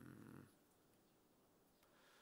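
A man's drawn-out hesitant 'um' trailing off about half a second in, then near silence with only room tone.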